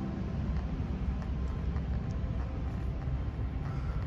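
Steady low outdoor rumble, like wind on the microphone, with faint scuffs of footsteps on a sandy trail.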